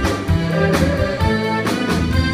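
Live band playing behind the vocal group, sustained instrument notes over a steady drum beat of about two hits a second.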